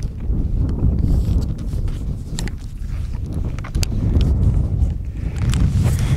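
Wind buffeting a handheld camera's microphone, a steady low rumble, with a few scattered clicks and footfalls as the camera is carried on a walk.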